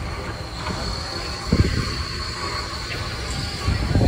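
Steel wheels of a slowly moving steam train's tender and coach squealing against the rail in a thin, steady high tone, over a low rumble. A single knock sounds about a second and a half in.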